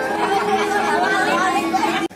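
A group of people talking at once, with several voices overlapping in steady chatter.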